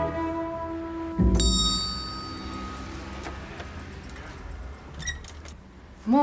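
Background music ends in the first second. About a second in comes a thump and a small bell rings, dying away over a second or so. A few faint clicks follow near the end.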